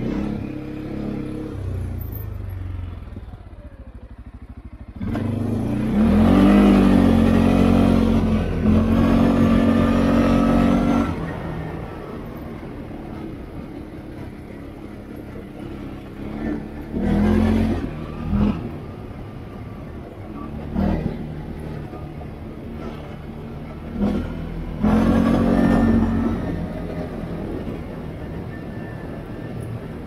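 CF Moto 520L ATV's single-cylinder engine running under way, with the throttle opened about five seconds in and held for several seconds before easing back. Short bursts of throttle follow over a lower steady run.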